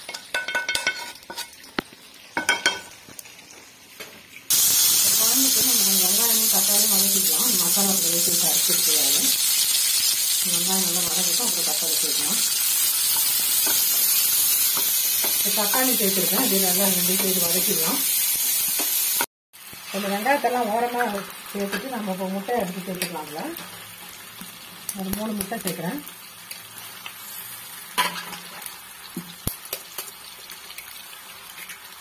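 Onion and tomato pieces frying in hot oil in a pan, a loud steady sizzle that starts suddenly a few seconds in and cuts off abruptly about two-thirds of the way through. Quieter clicks of stirring and pan handling come before and after it.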